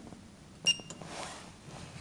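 KONE elevator car push button pressed, answering with a short high beep and a click about two-thirds of a second in.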